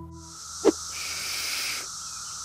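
Chorus of Brood X periodical cicadas: a steady, high-pitched hiss, with a higher whirring band swelling for about a second in the middle. A single brief knock about two-thirds of a second in.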